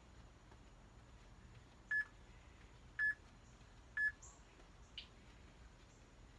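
Interval workout timer beeping three times, short identical tones one second apart, counting down to the next exercise interval.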